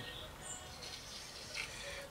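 Quiet workshop room tone, with a faint, brief high-pitched chirp about a quarter of the way in and a faint small tick near the end.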